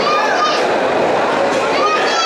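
Crowd of spectators at a boxing match, a steady din of many voices chattering and calling out, with high-pitched shouts near the start and again near the end.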